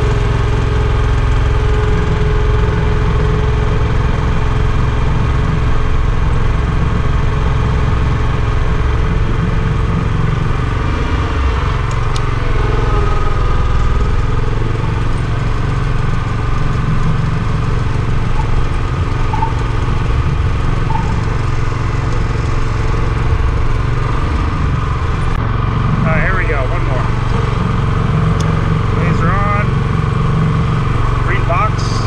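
Small gasoline engine of a Graco line-striping machine running steadily at a constant speed.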